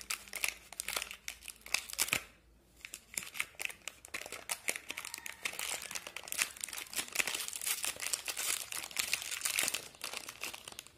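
Crinkling of the plastic pouch of an HP 682 black ink cartridge as it is handled and pulled open, with a short pause about two and a half seconds in.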